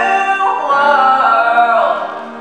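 Two singers performing a duet, holding long sung notes with a downward slide in pitch near the end.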